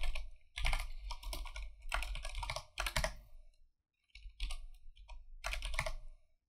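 Typing on a computer keyboard in several quick bursts of key clicks, with short pauses between them.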